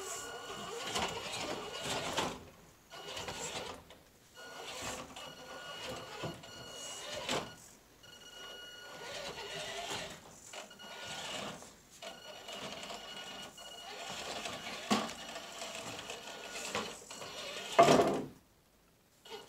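Axial SCX10 II RC rock crawler crawling slowly, its small electric motor and gears giving a faint steady whine under the knocks and clatter of its tires and chassis on loose wooden slats. There is a sharper knock about three seconds before the end, and the loudest clunk comes at the very end.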